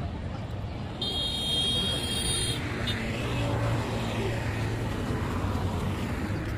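Steady rumble of road traffic, with a high-pitched steady tone sounding for about a second and a half starting about a second in.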